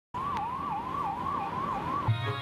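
Electronic siren sounding a fast, repeating rise-and-drop yelp, about three cycles a second.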